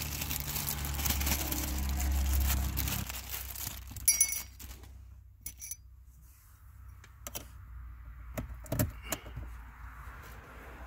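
Plastic zip bag crinkling as it is handled, then a sharp metallic clink about four seconds in as the aluminium knob-cover rings knock together, followed by a few small taps and clicks.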